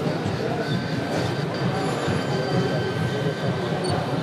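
HO-scale model steam tram engine running along the track, with a thin, steady high whine from about a second in to near three seconds, over a low background of people talking.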